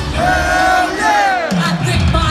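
Live stadium concert sound through a phone: the beat drops out and a single voice holds one long note, then slides down, over a crowd yelling. The bass comes back in near the end.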